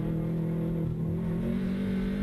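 Subaru WRX STI's turbocharged flat-four engine heard from inside the cabin. The note sags a little in the first second, then climbs steadily as the car accelerates out of a slow corner.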